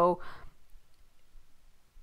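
A woman's voice trails off at the very start, then a pause of near silence with only faint room tone and one soft brief noise about half a second in.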